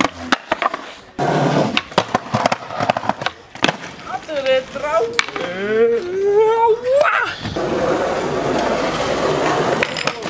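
Skateboard on concrete: sharp pops, tail slaps and wheel clacks through the first few seconds, then the steady rolling of the wheels over the pavement near the end. A person's long, wavering call sounds between them, from about four to seven seconds in.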